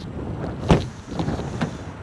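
Wind buffeting the microphone with handling noise, and a sharp knock about a third of the way in with a few smaller knocks after it, as a door of the pickup truck is worked open to reach the rear seats.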